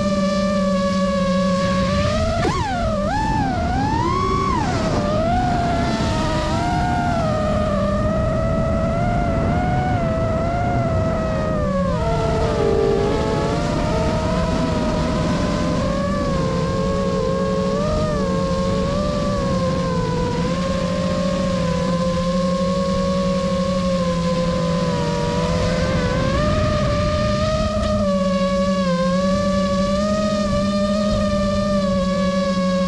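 FPV quadcopter's brushless motors whining. A steady tone while the quad sits armed turns, about two seconds in, into quick up-and-down pitch swings as the throttle is punched for take-off. The whine wavers with throttle through the flight and settles back to a steady tone near the end, with the quad back on the ground.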